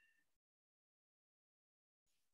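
Near silence: a faint trailing end of sound in the first moment, then the audio drops to dead silence.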